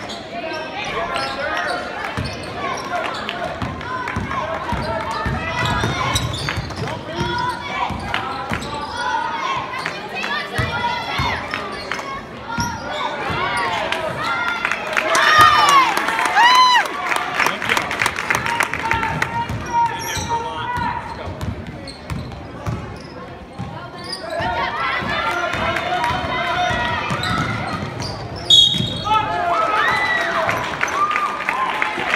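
Live junior high basketball play on a hardwood gym floor: the ball dribbling with repeated sharp bounces, mixed with shouts and chatter from players, coaches and spectators, echoing in the large gym.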